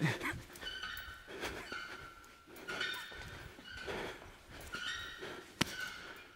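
Faint sounds of a boxer's footwork and movement on a gym floor: soft scuffs about once a second, with a single sharp tap near the end.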